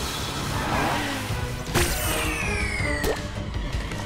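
Cartoon action sound effects over background music: a sharp hit a little under two seconds in, then falling swooshing tones and a second hit at about three seconds.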